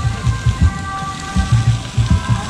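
Live rock band playing outdoors, heard from a distance: a sustained chord held over heavy, irregular low drum and bass thumps, with a steady hiss underneath.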